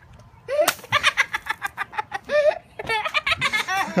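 High-pitched laughing and shrieking in quick repeated peals during a water balloon fight, starting about half a second in after a single sharp smack, and coming again near the end after a short break.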